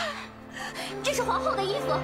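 Women's agitated dialogue with a gasp, over a low, sustained background score; the voices drop away briefly just after the start and resume about a second in.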